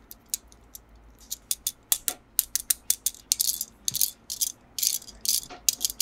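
Toy packaging being handled and opened: an irregular run of sharp clicks and taps, with two brief crinkles about three and a half and five seconds in.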